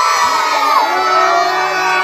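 A group of children shouting and cheering together, many high voices overlapping in one loud, continuous cheer.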